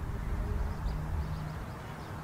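Low rumble of outdoor background noise, with a faint steady hum for about a second in the middle.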